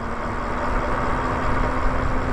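Steady wind rush and tyre noise from a Lyric Graffiti e-bike rolling along a paved street, with a faint steady hum underneath.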